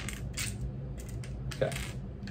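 Hard plastic building plates clicking and clacking lightly against each other as they are handled, a few small separate clicks.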